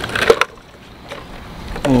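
Hard plastic clicks and knocks from a fuel pump module's plastic housing as it is handled and pried apart: a few sharp clicks in the first half second, then only faint handling.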